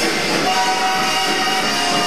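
Loud live rock band music with a long steady held note, entering about half a second in, over the band.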